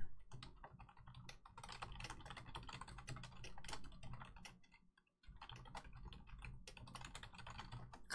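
Typing on a computer keyboard: a run of quick, irregular key clicks, pausing briefly about five seconds in.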